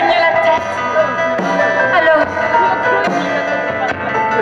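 Live band music: acoustic guitar and drum kit playing, with a few sharp drum hits.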